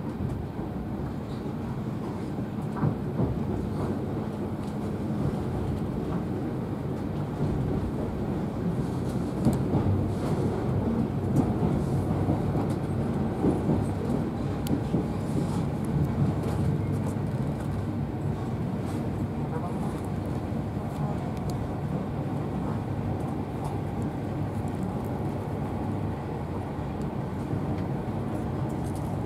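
Inside a Class 43 HST (InterCity 125) passenger coach as the train pulls away: a steady low rumble of wheels on rail, growing a little louder as it gathers speed, with a few sharp clicks over rail joints.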